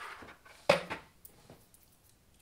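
Handling noise as objects are moved off a tabletop: a light rustle, then one sharp knock about two-thirds of a second in as something hard is set down, and a faint click near the end.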